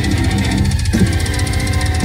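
Symphonic black metal band playing live at full volume: distorted electric guitar, keyboards and rapid, even drumming.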